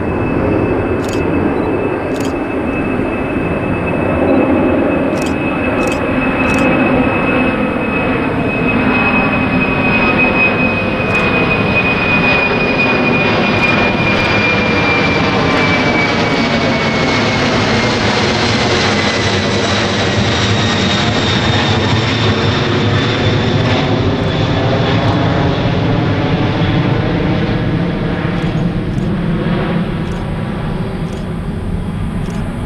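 Boeing 747-400ER's four General Electric CF6 turbofans at climb power as the jet passes low overhead: a loud, steady roar with a fan whine that drops in pitch as it goes over and away. A series of sharp clicks from a camera shutter sounds over the first seven seconds.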